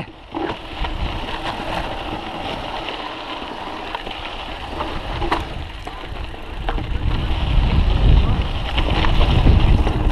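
Mountain bike descending a dirt trail: a steady rush of tyre and wind noise with a few short knocks and rattles, the low rumble growing louder from about two-thirds of the way in.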